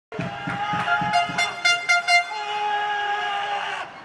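Loud, sustained horn blasts holding a few pitches. Sharp knocks come about four times a second in the first two seconds, then a single steady horn note runs on and breaks off just before the end.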